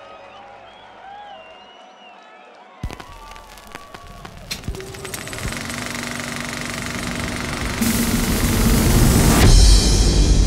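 Festival crowd whooping and calling, then about three seconds in the main-stage sound system starts an electronic music intro: a few sharp hits, then a rising noise sweep that swells for several seconds and cuts off sharply into a deep bass hit near the end.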